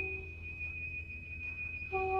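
Improvised music from a clarinet, electric guitar and voice trio: a single high, steady whistle-like tone held throughout. Lower sustained notes die away early and come back just before the end, over a low amplifier hum.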